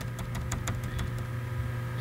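Steady low hum with a few faint, scattered key clicks on a laptop keyboard.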